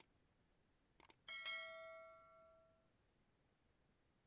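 A quick double click about a second in, then a single bell ding that rings out and fades over about a second and a half: the sound effect of a YouTube subscribe-button animation.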